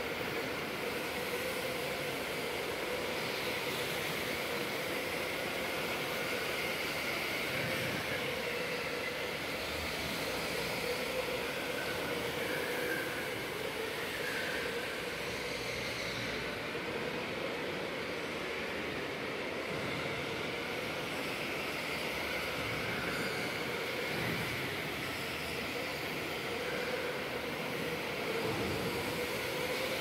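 Electric go-karts racing on an indoor track: a steady whine of their motors over tyre noise in a large hall, rising and falling a little as karts pass.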